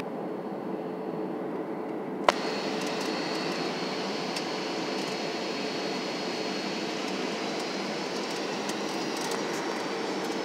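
Cabin noise inside a Boeing 737-700 on final approach: a steady rush of airflow and CFM56-7 engine noise, with a faint steady high whine. A single sharp click about two seconds in.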